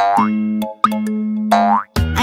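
Cartoon boing sound effects: springy upward pitch sweeps, about three in quick succession, over a steady held low musical note.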